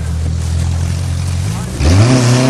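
A car engine running steadily at idle; near the end it jumps abruptly to a louder, higher note as a car accelerates away.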